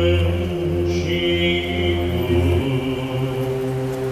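Orthodox church chanting for the Good Friday service: sustained sung voices over a low held drone, which steps to a new pitch about two and a half seconds in.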